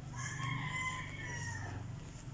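A rooster crowing once, a single call of about a second and a half that drops away at the end, over a low steady hum.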